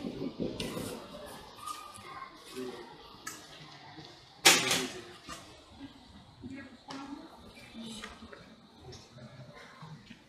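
Paper burning in a metal bowl while being stirred with tongs: scattered crackles, rustles and scrapes, with one sharp, louder burst about four and a half seconds in.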